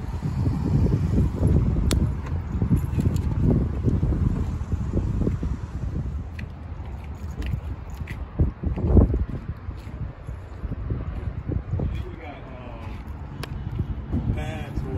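Wind buffeting the microphone: an uneven low rumble that gusts up and down, with a few small clicks, a stronger gust about nine seconds in, and faint voices near the end.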